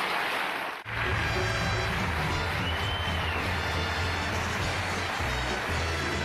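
A studio band playing the show into its commercial break, under audience applause. The sound breaks off abruptly just under a second in, then band music with a steady, sustained bass line carries on.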